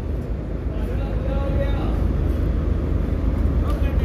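Steady low rumble of a railway station platform with a passenger train standing alongside, with faint distant voices a little after a second in.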